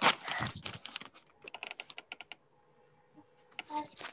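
A loud bump at the start, then a quick run of clicks like keyboard typing, and another short clattering burst near the end.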